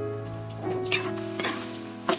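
Metal ladle stirring chicken pieces in a stainless steel wok, with sharp knocks of the ladle against the pan about a second in and again half a second later.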